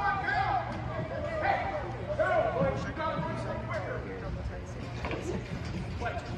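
Indistinct voices of spectators and players calling out during an indoor lacrosse game, over a steady low hum in a large indoor arena.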